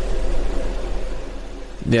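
Speech only: men talking in conversation, with a second voice starting up near the end.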